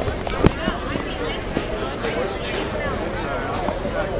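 Dense outdoor crowd of people walking and talking at once, a mass of overlapping voices with no single one clear. A sharp knock comes about half a second in.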